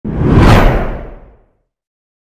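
Whoosh sound effect for a logo intro, with a deep low end, swelling at once, peaking about half a second in and fading out by about a second and a half.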